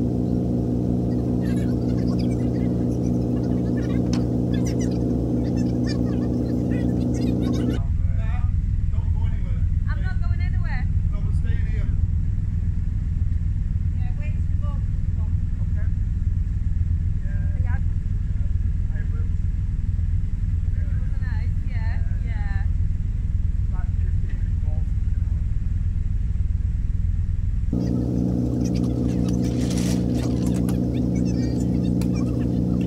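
Narrowboat engine idling steadily, its note changing abruptly about eight seconds in and changing back near the end. Short high chirps sound over it through the middle stretch.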